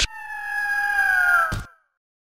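Logo sting sound effect: a sharp hit, then a long, clear, high cry that sinks slightly in pitch, cut off by a second hit about a second and a half in.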